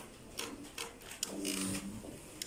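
A pause in a man's microphone speech in a hall: the room with a few faint clicks, and a short, quiet spoken sound about halfway through.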